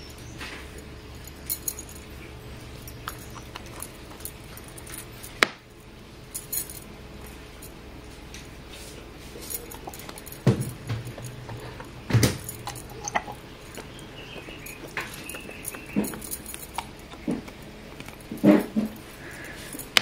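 Quiet handling sounds: metal bangles clinking with small knocks and clicks as a dropper bottle is handled and capped, with one sharp click about five seconds in.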